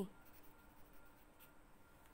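Faint scratching of a pen writing on notebook paper, as the word 'Ans.' is written and underlined.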